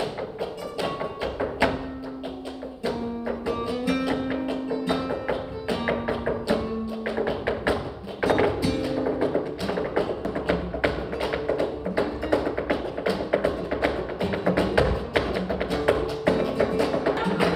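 Live flamenco: guitar with rhythmic palmas hand-clapping and the dancer's heeled shoes striking the stage floor. The strikes grow denser and louder about eight seconds in.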